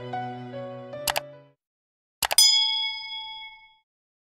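Subscribe-button animation sound effect: a mouse click, then a bright bell-like ding that rings out for about a second and a half. Music with bowed strings fades out underneath during the first second and a half.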